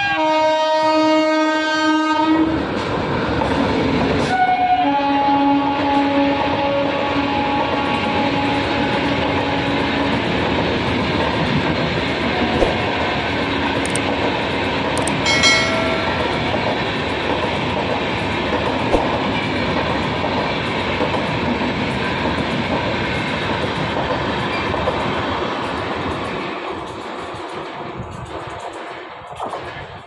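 Indian Railways passenger train passing at speed, its horn sounding two long blasts, the second about five seconds long, with a short high tone about halfway through. Under it the coaches rumble and clatter on the rails, fading near the end.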